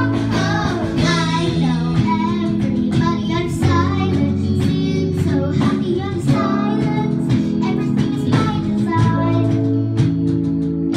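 A child singing a melody into a microphone with wavering vibrato, accompanied by strummed acoustic guitar and a second guitar holding steady chords.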